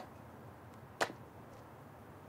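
Footstep of a block-heeled pump on concrete: one sharp heel click about a second in, with a fainter tap just before it.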